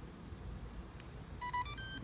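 Electronic beeper of a TRD Beholder DS1 three-axis handheld gimbal sounding three short beeps, each higher in pitch than the last, near the end; a status tone of the kind the gimbal gives on a joystick mode command or start-up.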